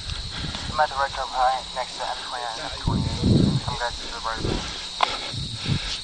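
A steady high cricket trill runs under faint, indistinct voices, with a few low thumps about halfway through.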